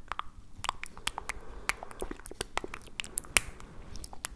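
Mouth and tongue clicks made close to a binaural microphone, coming as irregular sharp clicks several times a second, with the loudest a little past three seconds in.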